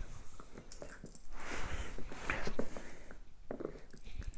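A small dog making a few short, soft sounds close by while being petted, among scattered light rustles and taps.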